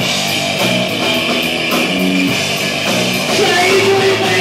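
Punk rock band playing live: loud electric guitar chords over steady drumming.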